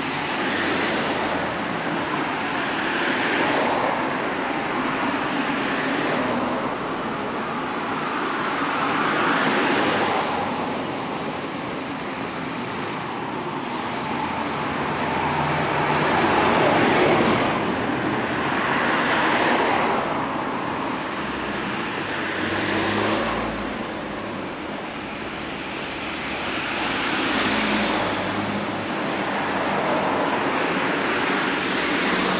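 Road traffic on a two-lane street: cars pass one after another, each swelling and fading as it goes by. A route bus passes close by about halfway through, the loudest moment.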